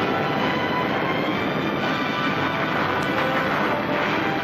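Film soundtrack music, a loud, steady passage of many held tones, over a dense rumbling noise.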